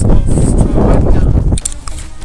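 Heavy wind buffeting an action camera's microphone, a loud rumbling blast that cuts off about one and a half seconds in, after which soft music takes over.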